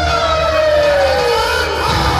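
A long, loud, siren-like wail that holds its pitch and then slides slowly downward; a second tone starts rising near the end.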